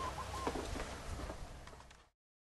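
Faint outdoor background with a few brief bird calls, the whole thing fading out near the end.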